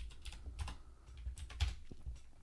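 Computer keyboard typing: a handful of unevenly spaced keystrokes as code is typed.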